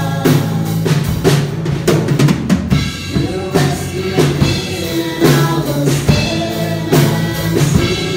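Live worship band playing: a drum kit keeps the beat with bass drum and snare hits under bass and acoustic guitar, while several voices sing together into microphones.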